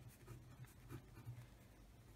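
Faint scratching and ticking of a pen writing on a notebook page, over a steady low hum.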